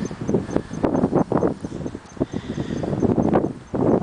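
Footsteps crunching through dry leaves and brush, with pine branches rubbing past: an irregular run of crunches and scuffs.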